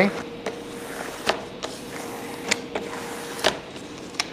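Adhesive vinyl wrap film and its paper backing crackling and rustling as they are handled and smoothed by hand, with several short sharp crackles, over a faint steady hum.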